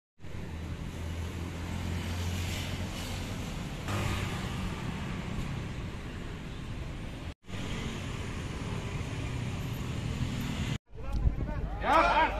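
Road traffic: a steady low engine hum and the noise of passing vehicles, cut off abruptly twice. Voices come in near the end.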